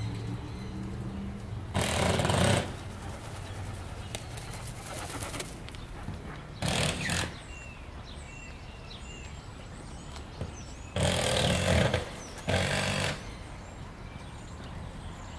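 Faint, short high bird chirps from small birds in an aviary, over a steady low background, broken by four brief loud rushing bursts of noise: one about two seconds in, one near seven seconds, and two close together near the end.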